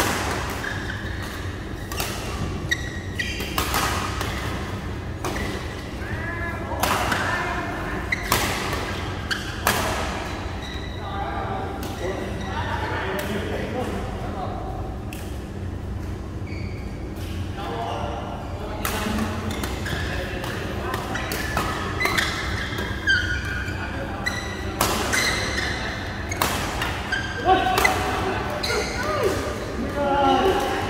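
Badminton rallies in a large echoing hall: repeated sharp racket strikes on the shuttlecock, irregularly spaced, with players' voices calling out over a steady low hum.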